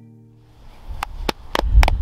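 The last chord of an acoustic song dies away, then a few hand claps from two people start about a second in, over a low rumble of wind on the microphone.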